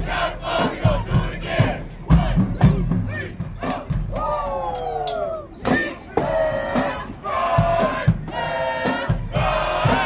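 High school marching band playing in the stands, with loud held brass notes, one long downward slide about halfway through, and drum hits, mixed with shouts and yells.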